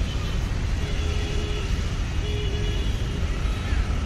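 Steady low rumble of road traffic, with two faint brief tones about a second in and again about halfway through.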